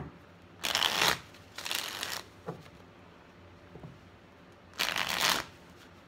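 A deck of tarot cards being shuffled by hand in three short bursts of about half a second each: one just under a second in, one about two seconds in, and one near the end. A sharp tap comes at the very start, and faint taps of the cards fall between the bursts.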